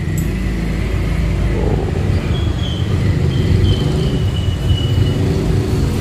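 An engine idling close by, a steady low rumble that holds even throughout.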